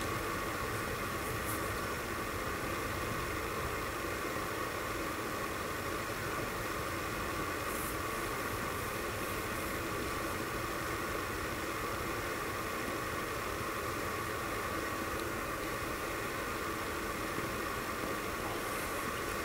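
Steady, even hiss with a faint hum underneath, unchanging throughout and without distinct events.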